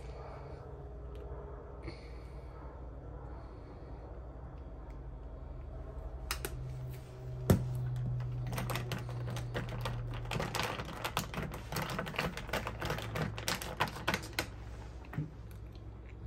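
Ice cubes clinking against a drinking glass as a metal straw stirs iced coffee: rapid, irregular clicks that start about six seconds in, with one sharper knock soon after, then continue busily through most of the rest. A low steady hum lies underneath.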